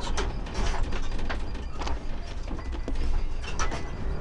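Patrol car cabin rattling and creaking over a steady low road and engine rumble as the car drives, with irregular sharp clicks throughout.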